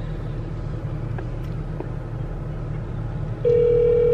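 Steady low hum of a car cabin. About three and a half seconds in, a phone's ringback tone starts again, a steady tone pulsed in two-second rings, as an outgoing call rings on speaker.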